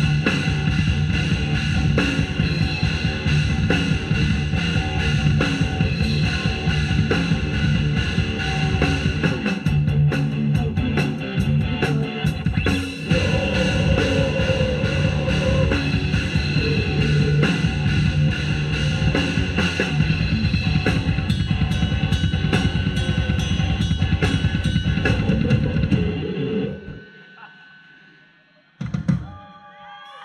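Live rock band playing at full volume: a drum kit with loud kick and snare driving a steady beat, under electric guitars. Near the end the playing stops and the last chord rings away, then the whole band lands one last short hit to close the song.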